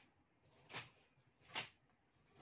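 Two brief rustling swishes, about a second apart, as a plastic packing strip is pulled and handled against a cardboard box.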